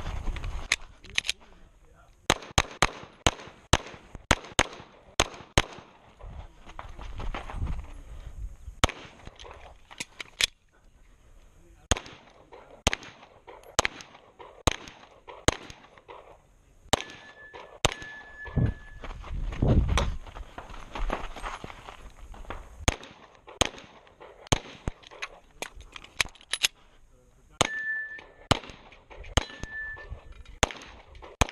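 Pistol shots fired in fast strings of several shots, broken by short pauses, as a semi-automatic handgun is shot through a practical-shooting stage.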